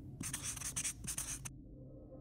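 Felt-tip marker writing on a white surface: a quick run of short scratching strokes that stops about a second and a half in.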